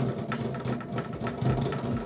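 Baitcasting reel being cranked steadily, its gears making a rapid mechanical whir as fishing line winds onto the spool.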